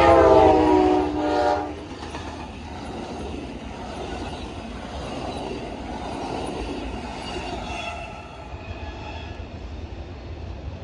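An Amtrak GE P42DC diesel locomotive's horn sounds a steady multi-note chord close by and cuts off a little under two seconds in. The passenger cars then roll past with a steady rumble and clatter of wheels on the rails.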